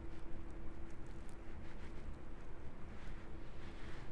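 Steady low room hum with a faint constant tone, and a few faint soft ticks from makeup being worked onto the face.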